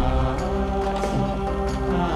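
Background film-score music: sustained held notes over a steady low bass, with a few soft percussive hits.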